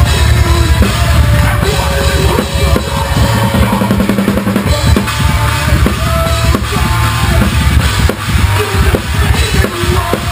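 Drum kit played live in a metal band, with rapid bass-drum strokes, snare and cymbals under distorted guitars. It is recorded from just above the kit, so the drums stand out over the rest of the band.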